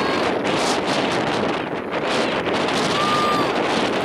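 Wind buffeting the camera's microphone: a loud, steady rushing noise.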